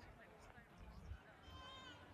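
Faint, distant outdoor voices of scattered people, with a high wavering call near the end and low rumbles underneath.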